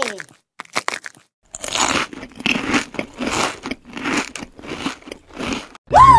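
A person biting into a snack coated in small red candy beads, with a few sharp crunches about half a second in, then steady crunchy chewing, a little over two chews a second.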